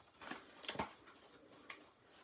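Faint rustling and soft taps of paper and cardstock being handled and refolded by hand, with a few short clicks, the clearest a little under a second in.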